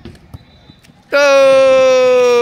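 A spectator close to the microphone shouts a loud, long drawn-out "Go!" cheering on a young player. It starts about a second in after a quiet stretch and is held steadily, sliding slightly down in pitch.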